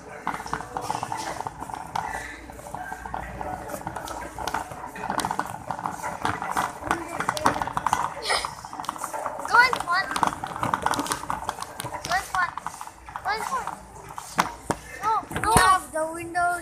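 Busy supermarket hubbub of many overlapping voices, with the wheels of a wire shopping cart clattering over the tiled floor as it is pushed. Nearer voices speak more clearly in the second half.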